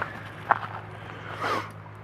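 A metal snake hook knocking and scraping on stony dirt ground: one sharp tap about half a second in, then a short scuff about a second later, over a low steady hum.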